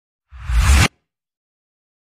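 A whoosh sound effect for an animated title intro: one loud swoosh about half a second long, a deep rumble under a bright hiss, cutting off sharply before a second in.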